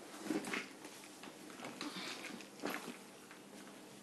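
Faint rustling and handling noises of clothing and a leather handbag as a person gets up from a sofa, with a few short soft breathy sounds.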